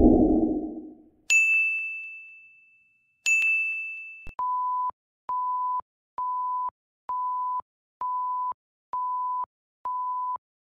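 Added editing sound effects: a whoosh fading out over the first second, two bright bell-like dings about two seconds apart, then a steady run of even, pure beeps, a little over one a second.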